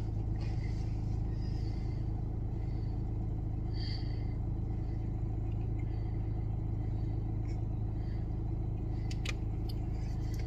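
A motor vehicle's engine idling steadily with an even low hum. Faint short high chirps sound over it, the clearest about four seconds in.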